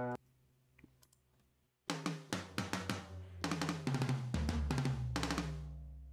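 Addictive Drums virtual drum kit played back through the studio software: a beat of kick, snare and hi-hat hits starts about two seconds in, and a deep 808 bass note rings out and fades near the end.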